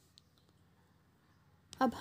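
Near silence with a few faint small clicks in the first half second, then a voice begins speaking near the end.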